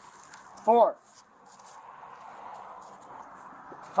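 A man's voice saying one short counted word about a second in as he counts his steps aloud, over faint steady background noise.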